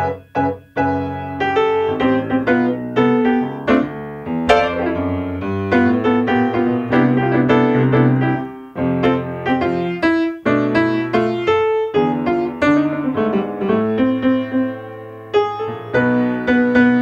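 Solo grand piano playing a tune: a steady stream of notes and chords, with a few brief breaks in the phrasing.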